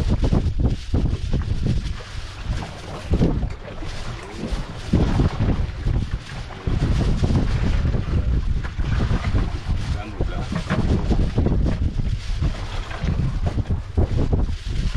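Strong wind buffeting the microphone on an open fishing boat at sea: a rough low rumble that rises and falls in gusts, easing briefly a few times.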